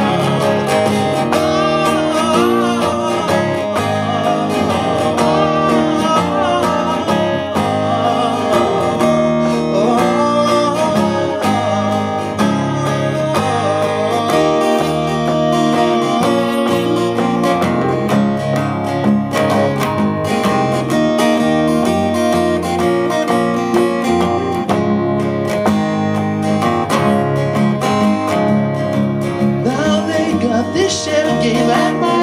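Two acoustic guitars playing together, one strumming chords while the other picks a melody, in an instrumental passage that runs on steadily.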